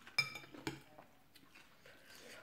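Metal spoon and fork clinking against a glass bowl while mixing noodles in curry sauce: a sharp, ringing clink about a quarter second in, then a softer second clink.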